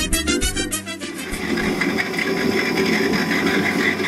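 Intro music ends about a second in, giving way to a potter's wheel running steadily while clay is shaped on it.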